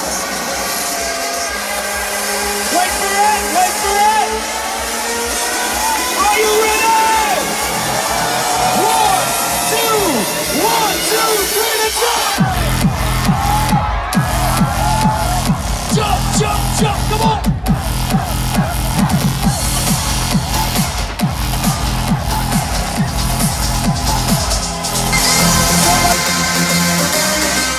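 Electronic dance music played loud over a festival sound system, heard from within a cheering crowd. The first half is a build-up without bass, then heavy bass and a steady kick drum come in about halfway through, dropping out briefly near the end.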